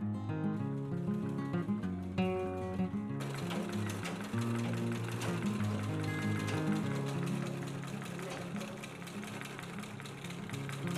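Background guitar music throughout; from about three seconds in, the fast, even clatter of a treadle sewing machine running joins underneath it.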